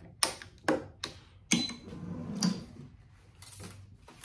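Tennis racquet stringing machine: a few sharp clicks and knocks from its clamps and tensioning mechanism in the first second and a half as a main string is pulled to tension and clamped, followed by quieter handling noise.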